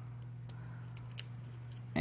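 Faint, scattered small plastic clicks and taps as a battery is fitted into a Holy Stone F180C micro quadcopter and its lead is handled, the clearest click about a second in, over a low steady hum.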